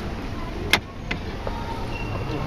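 Background noise of a large indoor sports hall, with one sharp, loud click about three-quarters of a second in and a fainter click a moment later.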